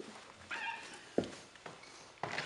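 Interior door being swung open: a short squeak about half a second in, then a single sharp knock a little after a second.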